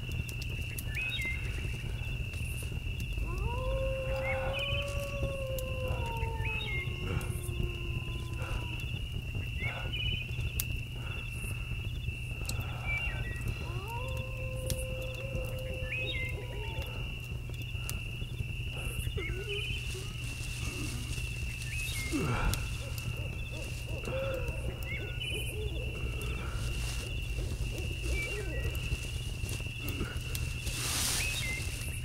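Eerie ambient soundscape: a steady low rumble under a constant high whine. Two long wavering howl-like calls glide slowly down in pitch, a few seconds in and again mid-way, with a shorter one later, among scattered small clicks.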